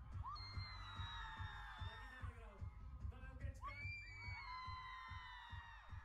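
Live pop concert music, heard faintly: a steady drum beat under two long held high notes, each starting with an upward slide and sagging slightly.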